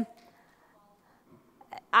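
A woman's voice trails off on "um", followed by a pause of about a second and a half of near silence. A short breath-like sound comes near the end, just before she starts speaking again.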